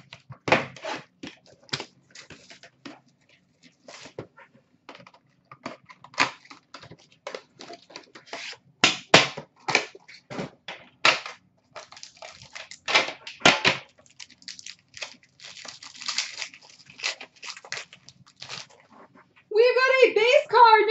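An Upper Deck Premier hockey card box being opened by hand: irregular rips, crinkles and clicks of cardboard and wrapping, with the metal collector's tin from inside it being handled.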